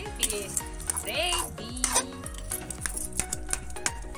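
Metal spatula scraping and clinking against an aluminium kadai as thick pumpkin curry is stirred and pressed soft, with repeated sharp clicks. Background music plays underneath.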